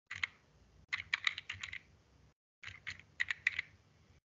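Computer keyboard being typed on: one keystroke near the start, then two quick runs of keystrokes about a second each, with short pauses between.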